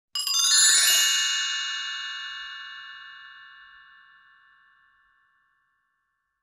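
A bright, bell-like chime sound effect: a shimmering cluster of high notes in the first second, then a long ring-out that fades away over about five seconds.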